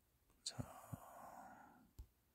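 Near silence, with a faint click of a cardboard game tile on the table about half a second in. Then comes a soft unvoiced whisper for about a second and a half.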